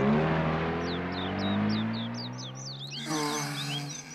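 Car engine pulling away, its pitch climbing slowly as it drives off and fades. Birds chirp in quick short notes over it.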